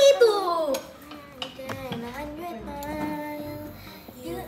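A child's voice singing without words, a loud falling note near the start and then softer held notes, with music underneath.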